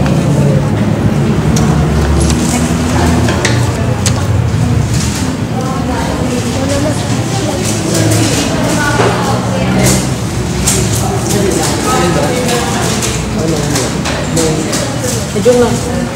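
Classroom chatter: many students talking at once in overlapping voices, with scattered light clicks and taps from handling materials.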